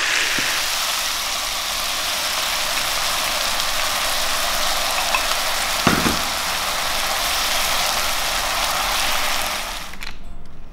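Chicken thigh pieces sizzling steadily in hot oil in a frying pan as they are stir-fried. A single thump about six seconds in.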